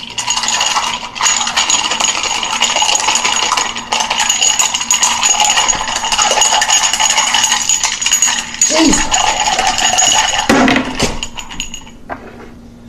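Ice cubes rattling and clinking against a glass as a cocktail is stirred with a spoon, the glass ringing steadily; the stirring stops shortly before the end.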